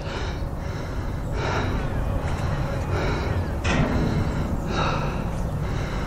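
Wind buffeting the camera microphone on an exposed lookout tower: a steady low rumble with a few stronger swells.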